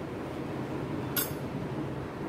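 A hand-held sieve being shaken over a glass plate while sifting flour, with a single sharp clink a little over a second in as the sieve knocks against the glass.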